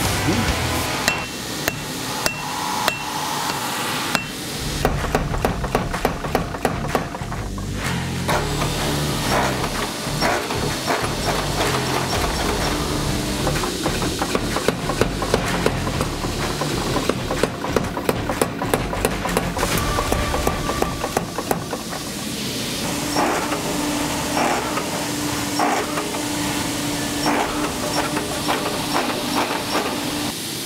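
Hammer blows ringing on a red-hot steel knife blade against steel dies and an anvil, coming in runs of quick strikes, over background music.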